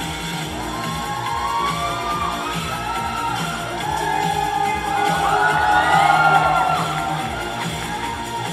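Cheer routine music playing over a sound system, with a crowd cheering and whooping over it. The cheers swell about five seconds in.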